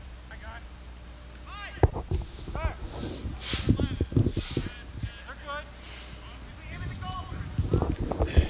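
Distant shouts and calls from soccer players across the field, with a few sharp knocks, over a steady low rumble at the field microphone.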